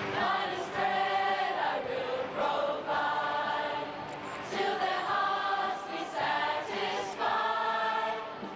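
A group of young people singing together in chorus. The song comes in phrases of a second or two, with brief dips between them.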